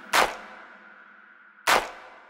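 MIDI karaoke backing track in a sparse passage: two sharp percussion hits about a second and a half apart, each ringing briefly, over a faint held chord that fades away.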